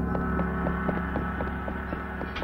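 A steady low hum with several held tones stacked above it and a faint, regular ticking at about four or five ticks a second: a tense ambient drone in a film soundtrack.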